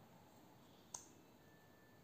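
Near silence, room tone, with one faint, sharp click just under a second in.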